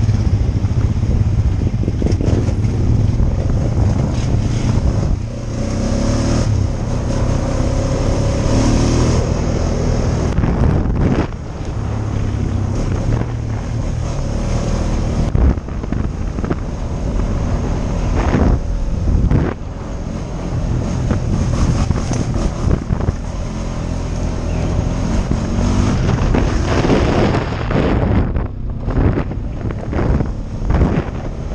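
ATV engine running while the quad is ridden along a dirt trail, loud and steady with a few brief dips in level, mixed with wind buffeting the helmet-mounted microphone.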